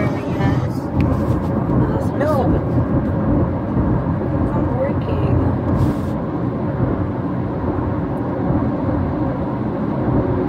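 Steady low rumble of road and engine noise inside a moving car's cabin, with faint voices now and then.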